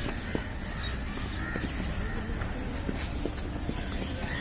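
Crows cawing several times over a steady low outdoor rumble.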